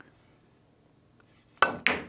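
A pool cue tip striking the cue ball hard, then about a quarter second later the cue ball cracking into an object ball: two sharp clicks near the end, after near silence.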